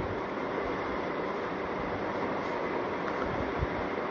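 Steady, even background noise, a hiss with a low rumble under it, with a soft low thump near the end.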